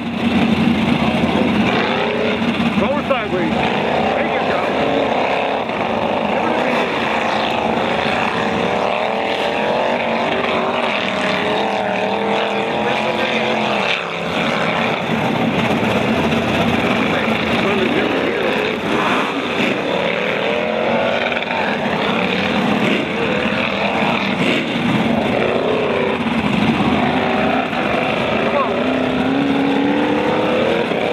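A 1985 Chevy pickup's 350 V8 engine revving hard under racing throttle, its pitch climbing and falling again and again as the driver gets on and off the throttle, with a brief drop about halfway through.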